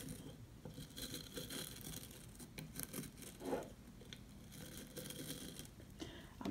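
Fingertips scratching and rubbing across the bristles of an antique hairbrush: faint, irregular crackly scratching.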